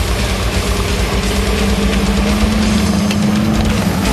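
Studebaker M29 Weasel tracked vehicle driving through snow, its six-cylinder Studebaker Champion engine running steadily under load. The engine note grows louder and rises slightly in pitch two to three seconds in as the vehicle comes close.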